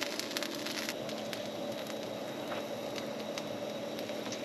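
Steady low crackling and hiss of pupusas cooking on a hot griddle, with a few small clicks in the first second.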